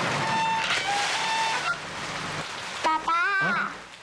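Loud street traffic noise with short car-horn toots, the outside noise that a soundproof window is meant to shut out. About three seconds in, a man's voice is heard briefly.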